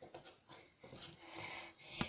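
Faint handling sounds of a person close to the microphone: a few soft clicks, then a breathy rustle about a second in.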